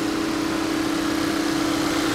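Volkswagen 2.0-liter turbocharged four-cylinder (TSI) engine idling under the open hood, a steady even hum.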